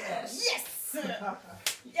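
Excited voices after the music stops, with a sharp hand slap of a high-five near the end.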